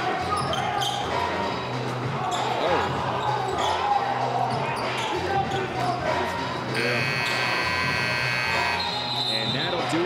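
Basketball bouncing on the court, then about seven seconds in the arena buzzer sounds one steady, several-toned blare for about two seconds, signalling the end of the quarter.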